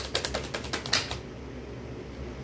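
A rapid, even run of sharp clicks, about ten a second, that stops a little over a second in, leaving a steady background noise.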